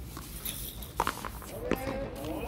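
Players' footsteps scuffing on a concrete court, with one sharp smack of the frontón ball being struck about a second in, and a voice calling out near the end.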